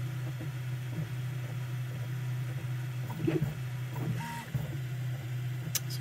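Prusa Mini 3D printer running as its print head lays down the first layer: a steady low hum with a few brief changes of motor tone as the head moves, and a sharp click near the end.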